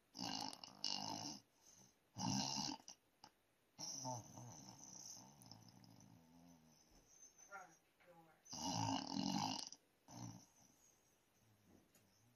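A sleeping person snoring: about five irregular snores, each a noisy rasping breath, a couple of seconds apart. A faint wavering whistle comes between two of them, a little past the middle.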